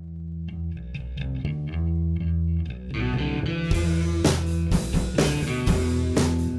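Rock band's rehearsal-room recording: a sparse opening of sustained low notes and picked guitar notes, then about three seconds in the full band comes in with drums and gets louder.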